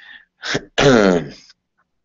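A man clearing his throat: a short burst, then a longer voiced rasp falling in pitch.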